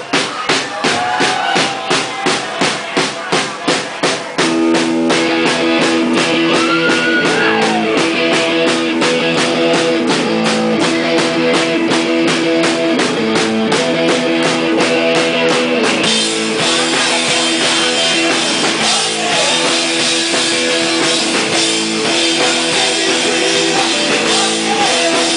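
Live rock band starting a song: the drum kit plays a steady beat alone for about four seconds, then electric guitar and bass come in and the full band plays a loud, driving rock groove. Well past the middle the drumming changes to a denser cymbal wash under the guitars.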